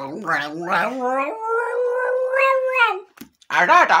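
A small dog and a man howling together: rising, wavering howls that settle into one long held note, then, after a short break, a shorter howl near the end.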